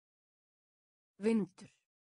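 Speech only: a single word, the Icelandic 'vindur' ('wind'), spoken once in two syllables amid digital silence.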